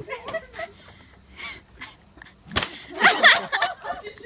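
A wooden stick swung at a hanging piñata, with one sharp, loud whack about two and a half seconds in. High-pitched shrieks from onlookers follow right after it.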